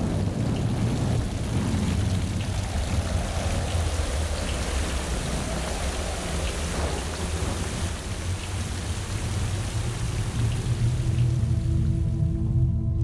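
Rain-and-thunder sound effect: steady heavy rain with a continuous low thunder rumble underneath. A few low sustained musical tones come in near the end.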